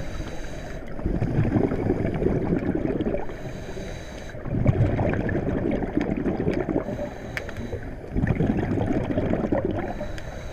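Underwater bubbling and gurgling water that swells in surges about every three and a half seconds, with a faint high hiss in the short lulls between them.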